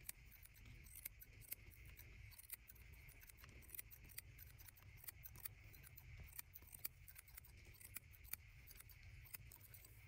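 Steel barber's scissors snipping hair over a comb: faint, crisp, irregular clicks, one or two a second, over a low steady rumble.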